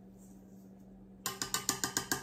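A measuring cup knocked rapidly against the rim of a stainless-steel stand-mixer bowl to shake out the last of the sugar. The run of light, ringing knocks starts a little over a second in, at about eight a second.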